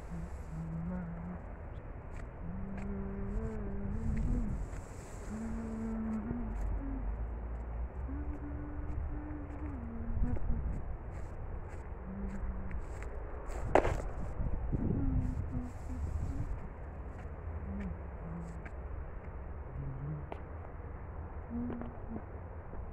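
A low voice humming a slow tune in short held notes that step up and down in pitch, over a steady low rumble like wind on the microphone. A single sharp click about two-thirds of the way in.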